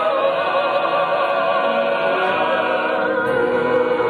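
A group of women singing together into a handheld microphone, holding long notes with vibrato.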